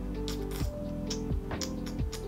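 Background music: held tones over a steady beat, about one hit every two-thirds of a second.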